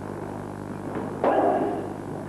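A sudden sharp strike about a second in, as two karate fighters clash in sparring, ringing briefly in the hall. It plays over a steady electrical hum from the old tape recording.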